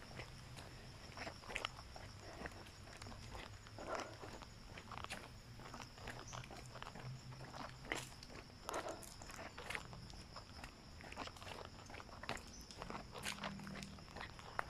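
Faint, irregular footsteps of a hiker walking along a trail.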